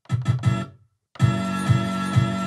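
Sampled music played from a pad controller: three quick chopped stabs of the same chord, a brief gap, then about a second in a full loop starts with a steady beat about two times a second.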